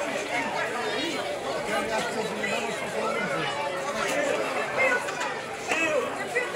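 Many people talking at once: steady overlapping crowd chatter with no clear words, with a couple of louder voices standing out near the end.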